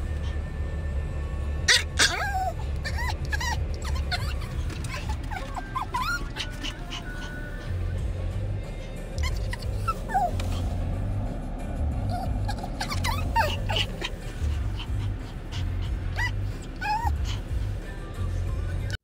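Yorkshire terrier whining over and over in short, high, rising-and-falling whines, with a few sharper yips, over a steady low hum in the car cabin.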